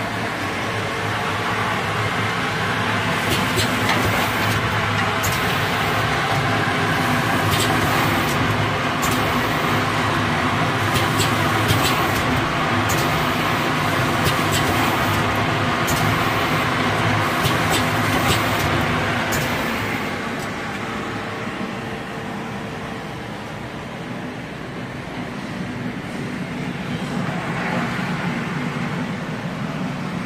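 Automatic film packaging machine wrapping bully sticks, running with a steady mechanical hum and a scatter of sharp clicks. The running noise eases a little about two-thirds of the way in.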